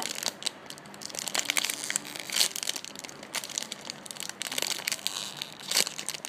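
Thin clear plastic bag crinkling on and off as fingers squeeze and turn a squishy toy inside it.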